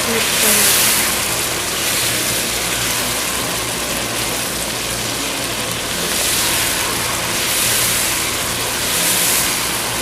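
Chicken pieces sizzling in ghee in a non-stick pot while they are stirred and turned with a slotted plastic spoon. The sizzle swells with each stroke, about every second or so, over a steady low hum.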